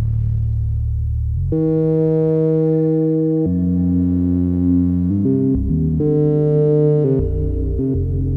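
Eurorack modular synthesizer playing an ambient patch of sustained, overtone-rich tones over a low drone. The notes change every second or two.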